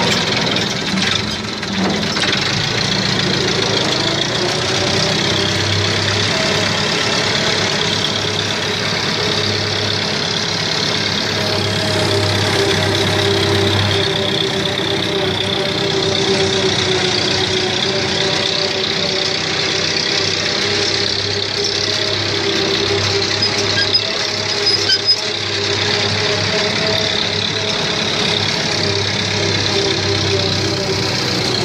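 An old farm tractor's engine running steadily under way, heard from the driver's seat, with a low, even hum. A few brief sharp knocks come about three-quarters of the way through.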